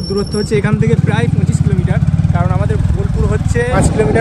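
Motorcycle engine running under way, a steady low rumble of rapid, even firing pulses, with a voice talking over it.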